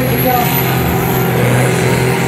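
Diesel engine of a 4.5-tonne sport-class pulling tractor running flat out under full load as it drags the weight sled, a steady heavy drone with a high whine that rises slowly.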